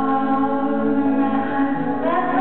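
Live band music: long held sung notes with guitar and keyboard accompaniment.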